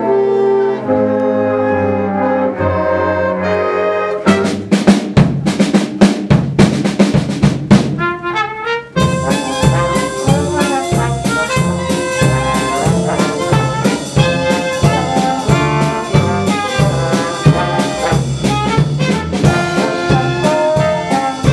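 Student jazz band playing: clarinets and other woodwinds hold chords for the first few seconds, then a drum break of sharp hits, then the full band with trumpets and trombones comes back in about nine seconds in.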